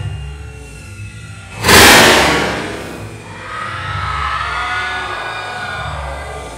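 Dance music with a steady beat, broken about two seconds in by one loud, sudden blast of hiss from a confetti cannon firing, which fades away over about a second as the music carries on.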